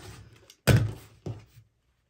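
A rotary cutter with a nicked blade runs through fabric along a ruler on a cutting mat with a faint scrape. About two-thirds of a second in comes a sharp thunk, then a smaller knock half a second later, as the cutter and ruler are set down on the mat.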